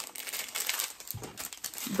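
Plastic packaging of a diamond painting kit crinkling as it is handled, in irregular crackles.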